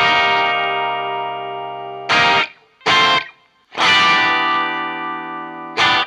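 Electric guitar chords from a 2008 Gibson Les Paul R9's humbucker pickup with the guitar volume knob at 2, played through a Marshall Studio Vintage head into a 1971 Marshall 1960B 4x12 cabinet. A chord rings out and fades over about two seconds. Two short chord stabs follow, then a second chord is held for nearly two seconds, and a short stab comes at the end.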